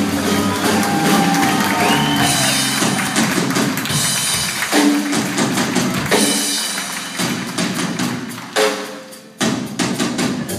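Live band playing: drum kit struck busily over upright bass and keyboard parts. The music dips briefly near the end, then comes back in with a sharp drum hit.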